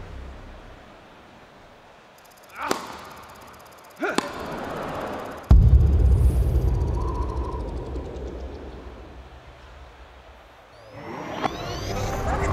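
Promotional-film soundtrack: two short swishing hits about three and four seconds in, then a sudden deep boom a little after five seconds that fades slowly. Music and rising swoops build up near the end.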